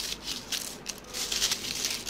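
Thin, crisp baked feuilletine wafer sheets crackling and rustling as a hand breaks and crumbles them into flakes on parchment paper, in an irregular run of small crunches.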